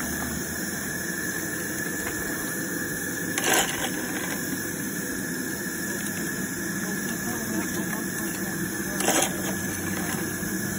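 Miniature coal-fired steam locomotive standing in steam, giving a steady hiss with a thin high tone over it. Twice, a few seconds in and near the end, a small fire shovel scrapes and clatters as coal is scooped from the bunker and fired.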